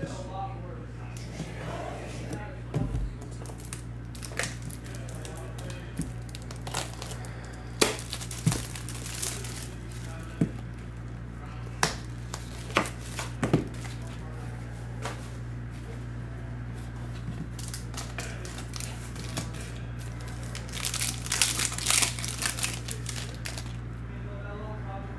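Clear plastic shrink wrap being torn off a trading-card hobby box and crinkled in the hand. The wrap crackles in bursts among sharp taps and clicks of the box being handled, busiest about eight seconds in and again near the end, over a steady low hum.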